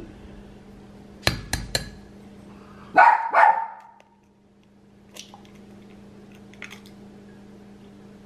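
An egg is tapped three times in quick succession against the rim of a drinking glass to crack it. Then a dog barks twice, the loudest sounds here, and a few faint clicks follow.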